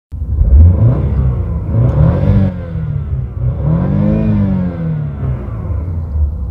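BMW car engine revved while stationary in Park, its pitch rising and falling several times, loudest in the first second.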